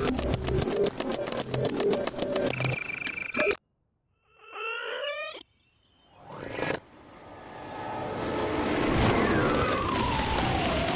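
Cartoon sound effects: a fast clattering treadmill with a low hum, which cuts off abruptly. After a short warbling call, the rush of an approaching high-speed train builds steadily, with a falling tone near the end.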